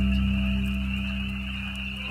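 Slow ambient synthesizer music, Roland's 'Soundtrack' patch, holding a low sustained chord that fades away toward the end. Underneath it runs a steady field-recorded chorus of frogs calling.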